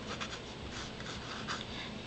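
Pencil scratching across paper in several short strokes while drawing pattern lines.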